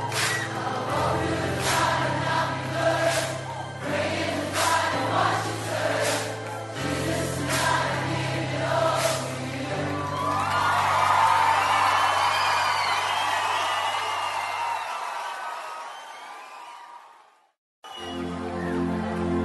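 Live pop-worship band playing, with drum hits, steady bass and a singing crowd. About ten seconds in, the drums stop and a held bass note rings on under crowd cheering and whistling. Everything fades out to silence near the end.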